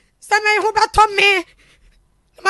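A woman crying as she speaks: a high, tearful voice with breaking pitch for about the first second and a half, then it stops.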